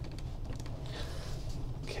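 A pen scratching across graph paper as it writes a short line of math, in soft, uneven strokes.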